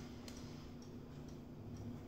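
Faint, scattered clicks and crinkles of a small plastic packet being handled and picked open by a child's fingers, over a low steady hum.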